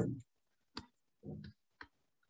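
Two short sharp computer mouse clicks about a second apart, as slide annotations are cleared, with a brief faint low sound between them.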